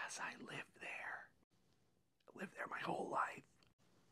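A man whispering two short phrases, the second starting about a second after the first ends.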